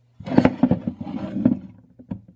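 Metal worm mold being moved and tipped on a wooden table, giving a rough scraping, rattling noise of irregular strokes that starts just after the beginning and lasts about a second and a half.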